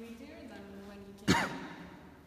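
Voices holding long steady notes, then a sudden loud breathy sound, like a sigh, just over a second in.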